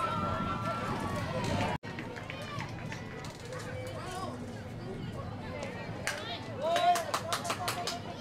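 Spectators and players calling out and chattering at a softball game, with louder shouts and a few claps about six to seven seconds in. The sound cuts out for an instant about two seconds in.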